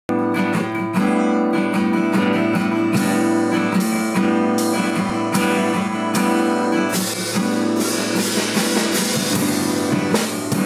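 Acoustic guitar strummed repeatedly, its chords ringing on between strokes.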